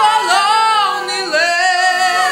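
Multi-tracked a cappella singing by one woman: several overdubbed voice parts layered in harmony, holding and sliding between notes. A low held part drops out about a second and a half in.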